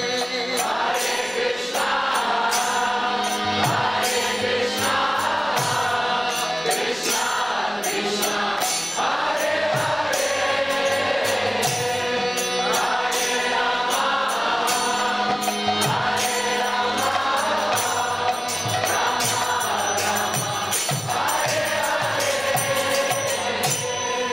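Kirtan: devotional mantra chanting by a lead singer and a group of voices, with small hand cymbals (karatalas) struck in a steady, even rhythm.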